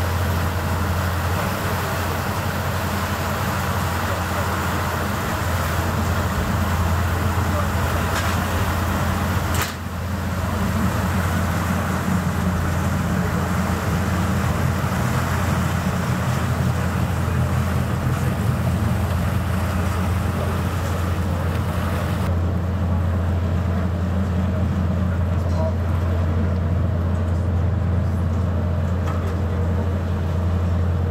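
Passenger ferry's engines running with a steady low drone under wind and water noise, heard on board as the ferry comes alongside the wharf. A short click and dip come about ten seconds in.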